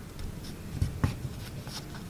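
Sheets of origami paper being folded and creased by hand, rustling softly, with two light knocks near the middle as the fingers press the folds down against the table.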